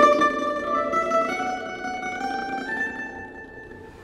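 F-style mandolin playing a melody on its higher strings with tremolo picking, a few sustained notes stepping upward and fading toward the end.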